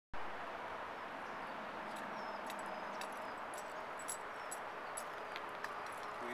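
Steady outdoor background hiss with scattered light clicks and crunches from a small dog's paws shifting on gravel, and a couple of faint high chirps.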